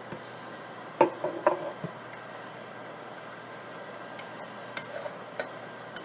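A spoon clinking and scraping against a stainless-steel saucepan as thick cream sauce is scooped out of it: one sharp ringing clink about a second in, a few lighter clinks just after, and a couple of soft taps near the end.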